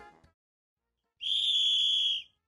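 The tail of the background music dies away, and about a second later a single steady, high whistle blast sounds for about a second. It is a game sound effect signalling that time is up.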